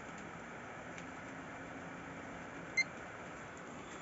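A desktop PC booting, with a faint steady running noise and one short, high beep from the motherboard's POST speaker near the end. The single short beep signals that the power-on self-test passed.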